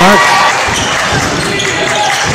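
Gym sound of a basketball game: crowd murmur and court noise, with a few dull knocks, after a commentator's voice trails off in the first half second.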